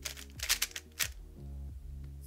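GAN 356 Air SM speed cube turned quickly through a Ua-perm algorithm: a short run of plastic turning clacks about half a second in and another clack near one second, over background music.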